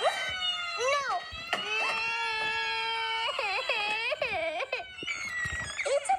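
A cartoon toddler's crying, played back through a tablet's speaker: several long drawn-out wails, one held steady and the others wavering up and down.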